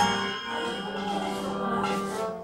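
Kirtan ensemble in a lull between phrases: a sharp strike right at the start rings away, leaving a steady held tone with no singing over it.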